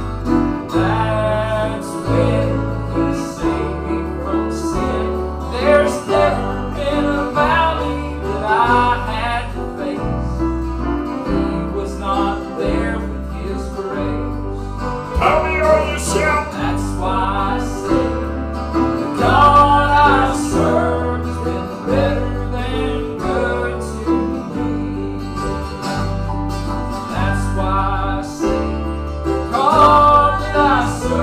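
Southern gospel band playing an instrumental passage: strummed acoustic guitar over a stepping bass guitar line, with piano.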